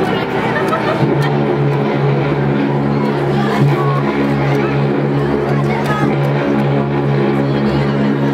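Crowd chatter with music; a steady low held note comes in about a second in and carries on under the chatter.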